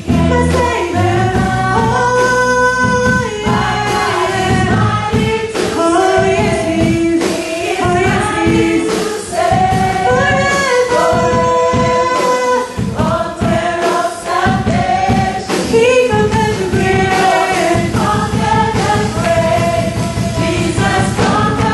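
Live gospel praise-and-worship music: singing, sung melody lines held and sliding, over a band with electric bass guitar and keyboard keeping a steady beat.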